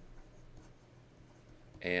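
A pen writing a word by hand, faint scratching strokes across the writing surface; a man's voice begins near the end.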